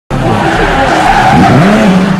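Sound effect of a car speeding past: the engine revs with its pitch sweeping up and down, and the tyres screech. It starts abruptly and loud.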